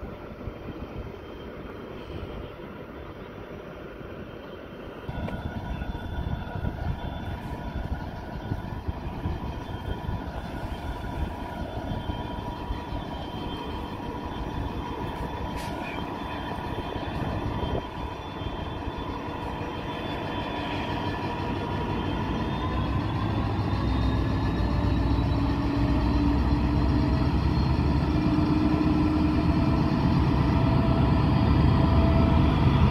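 Pacific National 82 class diesel-electric locomotive (EMD 710 two-stroke diesel) hauling a freight train, its engine running with a steady whine above the rumble. It steps up in loudness about five seconds in, then grows steadily louder as it draws close, with the low rumble strongest in the last few seconds.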